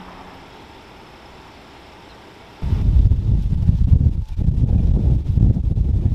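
Quiet outdoor street ambience, then, about two and a half seconds in, a sudden loud, fluttering low rumble of wind buffeting the microphone.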